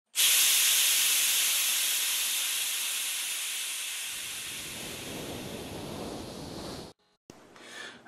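Logo-intro sound effect: a loud hiss like escaping steam that starts abruptly, fades slowly, and is joined by a low rumble about halfway through, then cuts off suddenly near the end.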